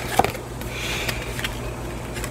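Tarot cards being handled: a soft rustle and slide of the cards, with a small tap about a quarter second in, over a low steady hum.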